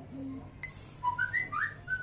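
A quick run of short, high, whistle-like chirps, each rising in pitch, starting about a second in, after a brief hiss.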